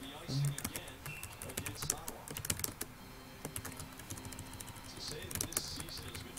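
Computer keyboard typing: a quick, irregular run of key clicks as a short phrase is typed.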